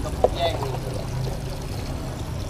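Water splashing and pouring as a seated elderly man is washed by hand at a basin, with one sharp click about a quarter of a second in.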